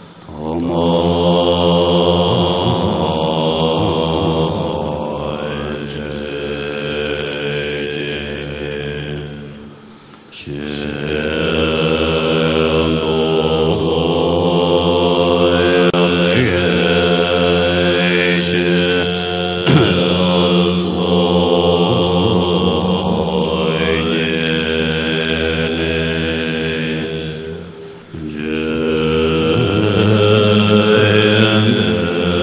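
A Buddhist invocation verse chanted in long, held notes with slow glides in pitch, in phrases broken by a breath about ten seconds in and another near the end.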